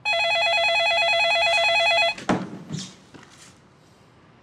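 An office desk telephone rings with a fast warbling electronic trill for about two seconds. It stops abruptly as the handset is lifted with a short clatter.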